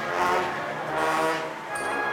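Procession brass band playing a slow funeral march, with sustained chords that change about once a second.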